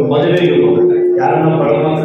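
A man's voice speaking into a handheld microphone, drawing out one syllable on a steady held pitch for most of a second before carrying on.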